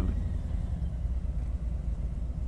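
Harley-Davidson Street Glide's Milwaukee-Eight 107 V-twin engine running at low speed in first gear, a steady low rumble.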